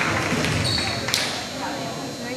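Spectators talking and calling out in a school gymnasium, with a volleyball smacking the hardwood floor once about a second in, just after a short high squeak.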